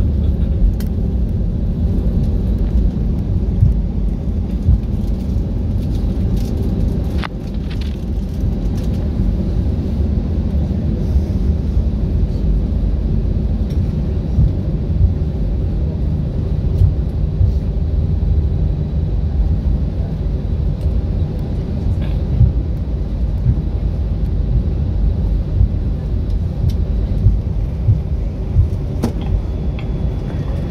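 Steady low rumble of an airliner's engines and rolling gear, heard inside the passenger cabin as it taxis after landing, with a few faint clicks.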